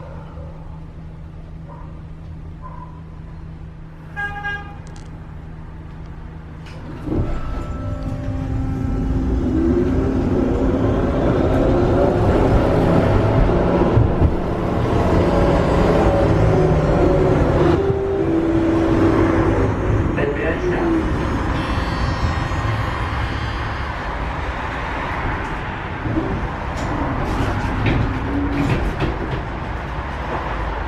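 Düwag N8C tram's thyristor traction control and motors: a low steady hum, a short chime about four seconds in, then the tram pulls away about seven seconds in with a loud rumble and a whine that rises in pitch and then falls again.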